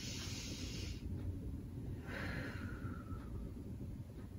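A woman taking a deep breath: a breath in during the first second, then a longer breath out starting about two seconds in.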